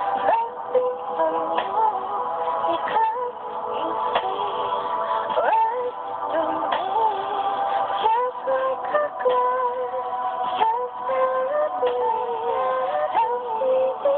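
Slow R&B-style song intro played back from a computer, with a gliding lead melody over a soft beat about every 1.3 seconds. The sound is thin and muffled, as when a phone records playback.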